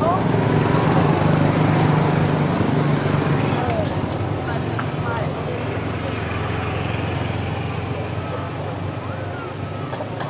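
A motor vehicle engine running steadily, loudest in the first few seconds and slowly fading, with a few faint voices.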